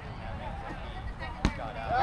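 A rubber kickball kicked once, a single sharp thump about one and a half seconds in, over faint voices from the field.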